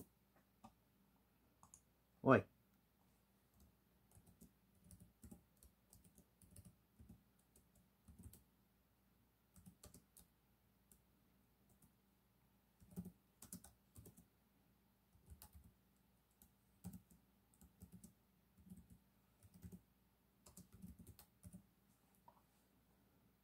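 Typing on a computer keyboard and mouse clicks in irregular short runs. One short, loud vocal sound, like a throat noise, comes about two seconds in.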